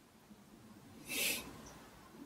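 A single short breath through the nose, a brief hiss about a second in, during a pause in speech.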